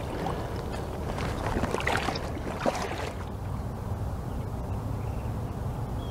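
Faint water sloshing and rustling as a keep net holding a large carp is lowered into the lake, over a steady low rumble; the handling sounds thin out about halfway through.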